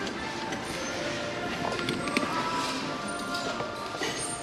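Store background music playing over the steady chatter and bustle of a busy crowd of shoppers.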